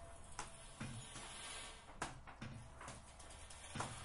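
Irregular knocks and clicks in a small room, a few at a time, with louder ones about two seconds in and near the end.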